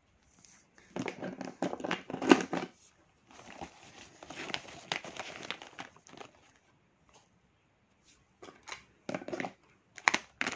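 Rustling and clicking handling sounds in three bursts, the loudest click a little over two seconds in: plastic highlighters being handled and packed into a fabric pencil case.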